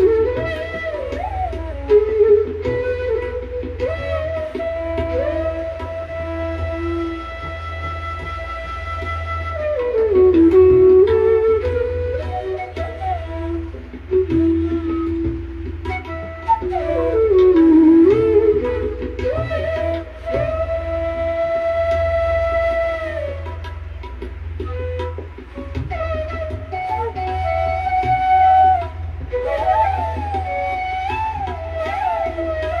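Bansuri, a side-blown bamboo flute, playing a slow melody in raag Brindavani Sarang: long held notes joined by slides, dipping down to lower notes twice.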